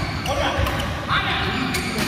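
Indoor badminton play: players' feet thudding on the court, with a few sharp clicks and voices.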